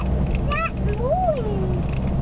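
A car running, heard from inside the cabin: a steady low hum. Over it come a few short rising cries and, about a second in, one longer cry that rises and then falls.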